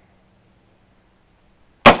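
A single sharp rifle shot from an AR-style rifle near the end, after a near-silent stretch; the shot is called a hit on the steel target.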